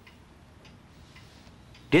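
Quiet room tone with a few faint, irregularly spaced ticks; speech starts again right at the end.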